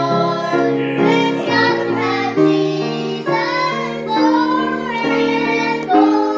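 Girls' voices singing a song with grand piano accompaniment, the piano moving through sustained chords under the melody.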